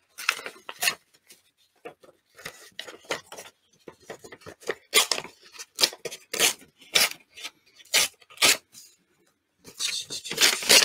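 A sheet of paper being torn in short rips around its edges. The rips come as a series of brief tearing sounds, fainter at first and louder and more regular in the second half.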